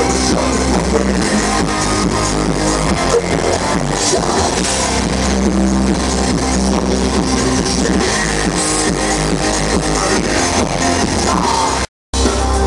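Industrial metal band playing live: distorted electric guitar over electronic keyboards and a steady low drum and bass pulse. The sound cuts out for a moment just before the end.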